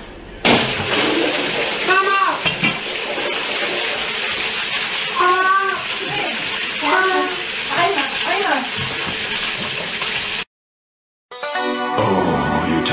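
A sudden crash as a barbell breaks the glass front of an aquarium, then water gushing steadily out of the tank, with several short shouts from a man over it. The sound cuts off near the end.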